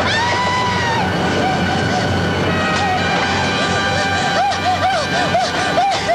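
Drama soundtrack music with steady sustained tones, over which a woman's high voice wails. There is one long held cry near the start, then short sobbing cries repeating a few times a second in the second half.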